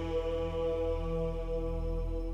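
Title theme music: one sustained droning chord held steady over a deep low hum.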